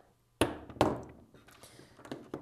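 A small plywood board fitted with metal battery holders set down on a tabletop: two sharp knocks a little under half a second apart, followed by faint handling noise.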